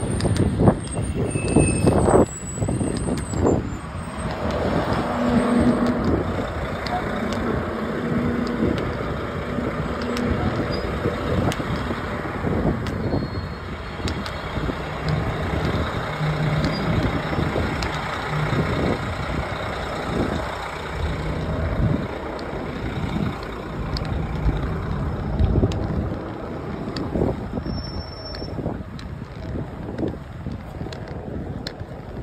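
Busy road traffic passing close by: a steady rumble of car and bus engines and tyres, with low engine hum from a large vehicle through the middle and a brief high squeal in the first few seconds.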